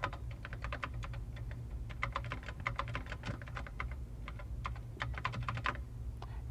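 Typing on a computer keyboard: a quick run of keystroke clicks, several a second, over a low steady hum.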